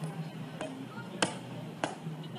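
Boots of a ceremonial guard striking cobblestones in a marching step: sharp clicks roughly every 0.6 s, the loudest about a second in and near the end, over a faint steady hum.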